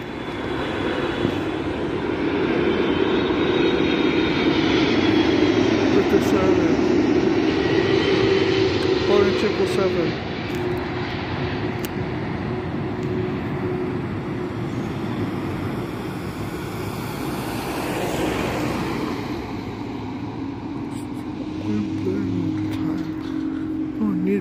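Jet airliner flying low overhead: its engine noise builds over the first couple of seconds, is loudest with a steady drone for several seconds, then eases off as it passes.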